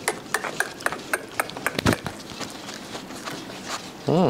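A litter of seven-week-old Rottweiler puppies scrambling over the pen floor and jumping at their owner: a run of irregular small clicks and taps, with one heavier thump a little before halfway.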